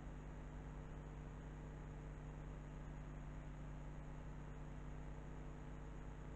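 Faint, steady room tone: a low hum under an even hiss, with no distinct events.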